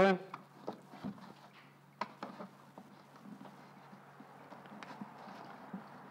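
Scattered light clicks and knocks of a black plastic 20-litre container being handled as a rubber washer is pressed into a hole drilled near its base, the sharpest click about two seconds in.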